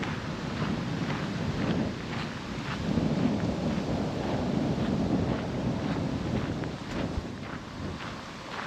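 Wind buffeting the camera microphone, a low rumble that swells through the middle, over footsteps crunching on a gravel path at about two steps a second.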